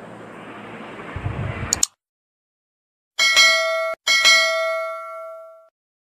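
Two bell dings about a second apart, each a ringing tone with several overtones; the second rings on and fades out. Before them there is faint background noise with a click, then a short stretch of silence.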